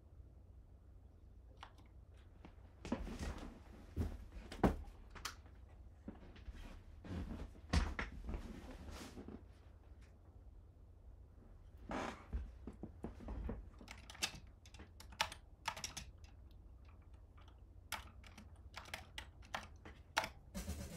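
Typing on a computer keyboard: several short runs of keystrokes separated by pauses.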